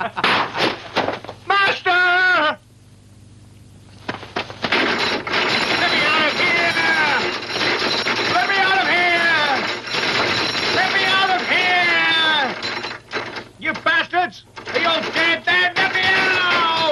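Iron prison-cell bars rattling and clattering as they are shaken, with repeated drawn-out, falling pitched sounds over them.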